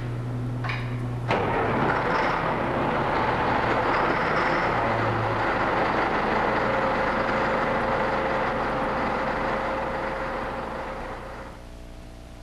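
Motor grader's diesel engine running, with a low hum at first, then a sudden jump about a second in to a loud, steady noisy running sound that fades out near the end.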